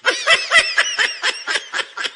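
High-pitched snickering laughter: a rapid run of short, pitched 'heh' bursts, several a second.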